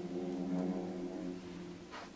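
A low, steady hum made of several sustained tones held together, slowly getting quieter.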